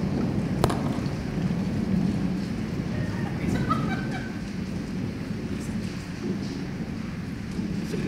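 Stage storm sound effect: a steady low rumble of thunder with rain, with a single sharp click about half a second in.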